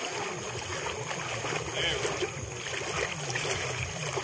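Soft, steady sound of water around a small boat with faint distant voices.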